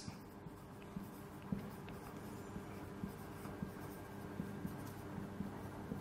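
Marker pen writing on a whiteboard: a faint run of short strokes as a phrase is written out.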